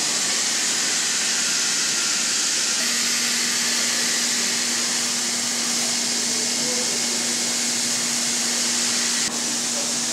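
Steady hiss of machinery in a production cell, with a low steady hum joining about three seconds in and a short break near the end.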